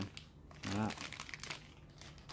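Plastic packet of Shimano BB-X fishing line crinkling in the hands as it is handled and set down, in short irregular crackles.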